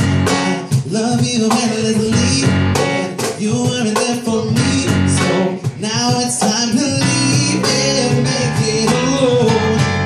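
Live band music: keyboard, cajon and electric bass playing together, with a lead vocal sung over them and the cajon's hits marking a steady beat.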